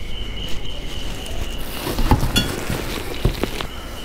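Handling noise: a few light knocks and rustles as a metal motorcycle grab rail is handled out of its cardboard box, over rumbling movement noise. A thin steady high whine runs through the first half and returns briefly near the end.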